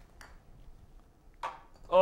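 Putter striking a golf ball once on an indoor carpet putting strip, a single sharp click. A softer, short noise follows about a second and a half later.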